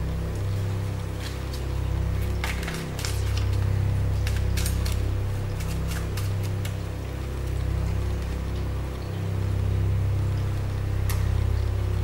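A low droning music bed that slowly swells and ebbs, with faint scattered clicks and flicks of playing cards being handled.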